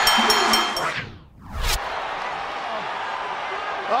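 Arena crowd cheering after a pinfall while a bell clangs rapidly, about three strokes a second. About a second in, a whooshing transition sound sweeps through and the noise dips, then steadier crowd noise follows.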